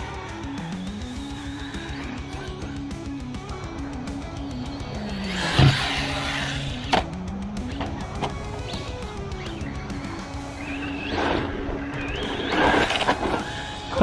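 Background guitar music with a steady stepping bass line, over which a brushless RC truck motor revs in bursts, about five seconds in and again in a longer swell near the end. Two sharp knocks come about a second apart, just after the first burst.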